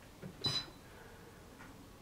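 A single short, high beep from the Tefal Easy Fry and Grill XXL air fryer's touch control panel as a button is pressed, about half a second in.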